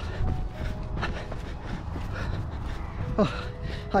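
A runner's footfalls on a dirt trail, a few strides a second, over a steady low rumble of wind and handling on the camera microphone. A short voiced breath or grunt from the runner comes about three seconds in.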